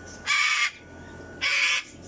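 Cockatoo screaming: two loud, harsh screams, each about half a second long, a second apart.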